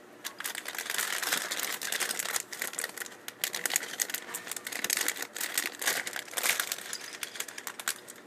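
A clear plastic LEGO parts bag crinkling as hands handle it and pull it open, with many sharp crackles. It starts just after the beginning and carries on, unevenly, until near the end.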